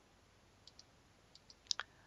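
Quiet room tone with a few short, faint clicks coming in pairs: one pair a little over half a second in, another around one and a half seconds, and a louder pair near the end.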